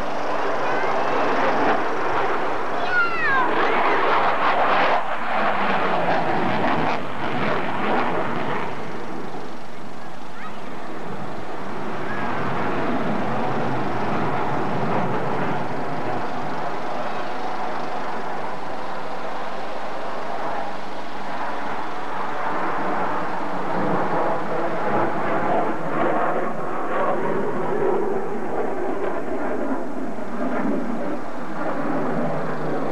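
Engine noise of an airplane flying past overhead, a steady rough drone that is fuller in the first several seconds and swells again near the end.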